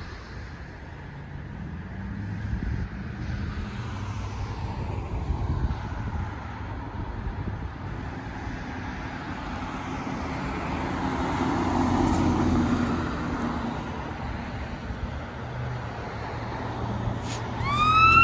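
Road traffic at an intersection: engines and tyres of passing vehicles, swelling to the loudest pass about twelve seconds in as an ambulance drives through. Near the end an emergency siren's rising wail starts.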